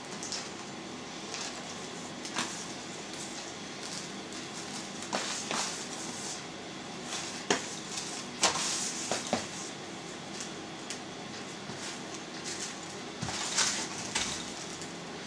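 Salt mixture being rubbed by hand into a raw pork ham in a plastic container for dry curing: soft rustling and scraping of salt over the meat, with a few light knocks scattered through.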